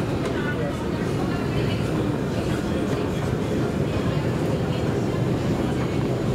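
Steady metro station ambience: a continuous low rumble with the indistinct voices of people passing.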